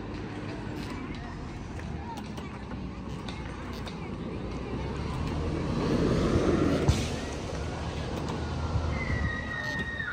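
Outdoor background noise of a car passing on a nearby road, swelling to its loudest about midway and then fading, with faint voices in the background.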